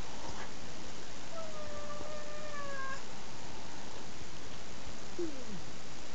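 House cat's long, drawn-out meow lasting about a second and a half, followed near the end by a short, lower call that falls in pitch.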